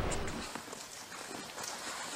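Faint, irregular soft taps and rustles of airmen handling a drag parachute's nylon straps and canopy. A louder, even background noise dies away in the first half second.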